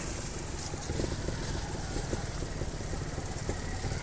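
Trials motorcycle engine running steadily, with no change in revs.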